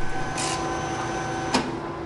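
Océ PlotWave 300 wide-format printer-copier running with a steady whirring hum, with a brief swish about half a second in. The hum stops with a click about a second and a half in, leaving a fainter steady hiss.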